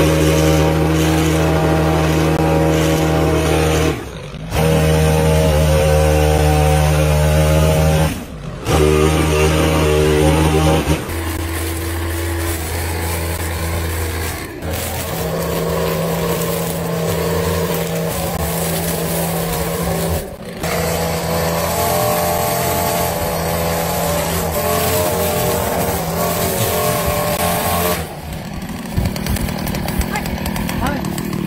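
Small two-stroke engines of gas lawn tools, a hedge trimmer and then a string trimmer, running at steady high speed across several short clips with sudden cuts between them. The engine sound drops away near the end.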